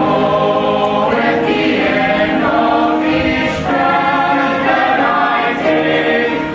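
Mixed choir singing a sacred anthem in several-part harmony, with chords changing about once a second.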